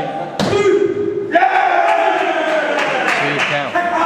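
A man's voice singing two long held notes, the second starting higher and sliding slowly down in pitch for over two seconds. A single sharp smack comes just before the first note.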